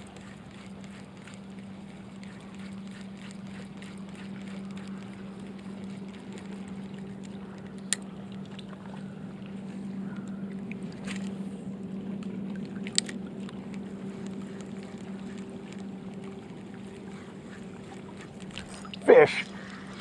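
Steady low drone of a distant boat engine across the water, swelling a little in the middle, with two sharp clicks about eight and thirteen seconds in.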